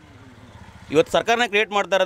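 Faint, steady low rumble of a motor vehicle engine or street traffic during a short pause. A man's voice starts speaking close to the microphone about a second in.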